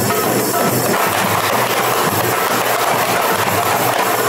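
Marawis percussion ensemble playing live: large hajir drums, darbukas and small hand-held marawis drums struck together in a dense, continuous rhythm.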